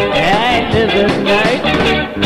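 Rock band playing live between sung lines: a lead line bending up and down in pitch over electric guitar, bass and drums.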